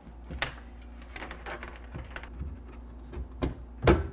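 Scattered knocks and clicks of hands working in a wooden cabinet while fitting a small cabinet fan, the loudest knock near the end, over a low steady hum.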